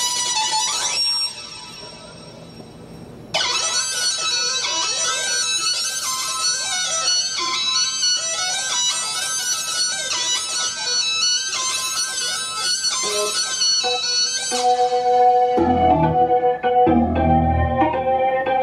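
Synthesizers playing an improvised jam of dense, sustained, sliding electronic tones, dropping quieter for about two seconds near the start. From about fifteen seconds in, low rhythmic thumps and a pair of steady held tones come in.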